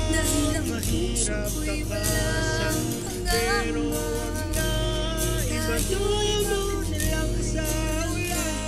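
A man and a woman singing a song together as a duet.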